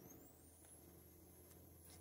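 Near silence, with a faint high-pitched stepper-motor whine that rises in pitch over the first second and then holds steady, over a low steady hum.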